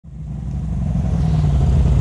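Polaris RZR side-by-side's engine running steadily with a low rumble, fading in from silence over the first second.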